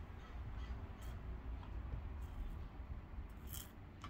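Drink sucked up through a plastic straw from a shaker bottle: quiet sipping with a few short sucking noises, around a second in, past the middle and near the end.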